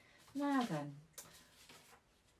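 A woman's voice: one short untranscribed word with falling pitch, followed by a brief rustle.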